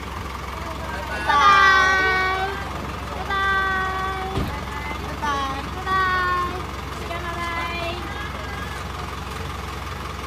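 A large vehicle's engine idling with a steady low hum, while voices call out over it in four drawn-out shouts.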